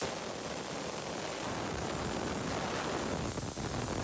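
Compressed shop air blowing in a steady hiss, drying brake cleaner off a scuffed wheel before it is painted.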